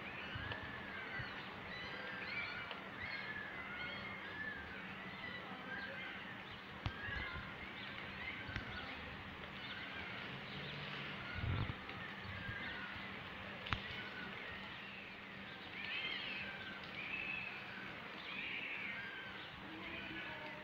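Newborn puppies whimpering faintly: many short, high cries that rise and fall in pitch, one after another, the cries of cold, wet pups. A steady low hum runs underneath.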